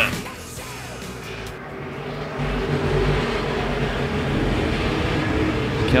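A field of about twenty IMCA Modified dirt-track race cars' V8 engines at full throttle as the pack accelerates off the green flag. The sound builds about two and a half seconds in to a loud, steady drone.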